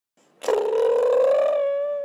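Intro sound effect: a single sustained pitched tone that starts suddenly, flutters and rises slightly in pitch, then holds steady and fades near the end.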